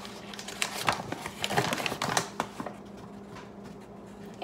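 Irregular light clicks and knocks of things being handled while flour is fetched, stopping about two and a half seconds in; a steady low hum runs underneath.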